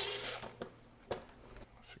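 A few faint sharp clicks and light handling noise from a cordless drill being handled against a sheet-metal control panel, over a low steady hum.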